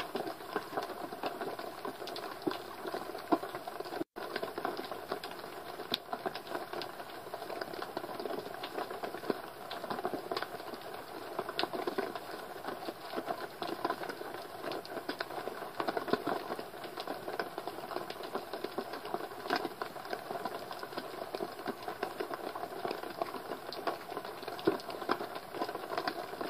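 Underwater ambience picked up by a camera in a waterproof housing on the seabed: a dense, continuous crackle of small clicks and ticks, with a very brief dropout about four seconds in.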